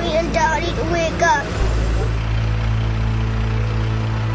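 A steady low vehicle engine hum, with a high, wordless voice crying out over it during the first second and a half.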